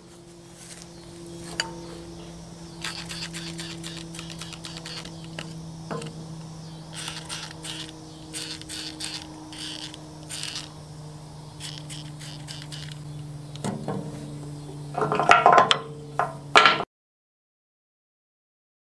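Light metal clinks and scraping from a hand tool worked at a stuck, grease-clogged bulldozer bucket pin, over a steady low hum. A few louder metal knocks come near the end, then the sound cuts off abruptly.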